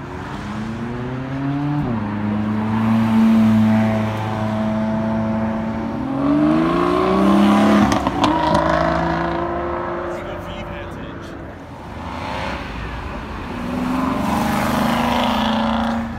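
Sports cars accelerating hard as they leave, one after another. The engine note climbs and drops sharply at an upshift about two seconds in, and again about eight seconds in as one passes close by. Another car revs up near the end.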